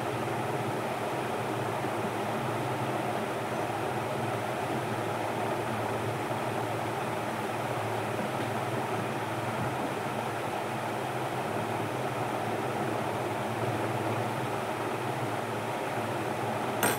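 A steady mechanical hum and whir of a small running motor, unchanging throughout.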